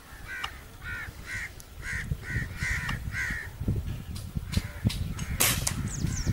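A crow cawing about eight times in quick succession, followed near the end by a single sharp crack.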